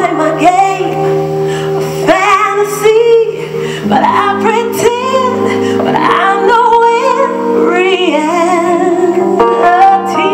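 A woman singing a soul ballad live with strong, wavering vibrato, backed by a band.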